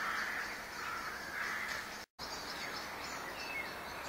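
Crows cawing, harsh calls roughly a second and a half apart, over a faint steady high chirring, with a short bird chirp later on. The sound cuts out completely for an instant about halfway through.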